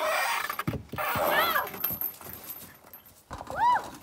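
A young child's wordless squeals, each rising then falling in pitch, twice, while swinging, with wind rushing over the phone's microphone in the first second or so and a few light handling knocks.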